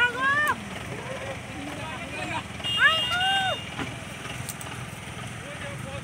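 A person's voice calls out twice in drawn-out shouts, each rising then falling: one right at the start and a louder one about three seconds in. Under them runs the steady low hum of a vehicle engine idling.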